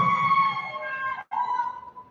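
A high-pitched held cheer from someone in the audience, in two long calls broken by a brief gap, the second a little lower.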